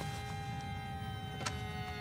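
A horror film's soundtrack drone: several steady, held tones over a low rumble, with a single click about one and a half seconds in.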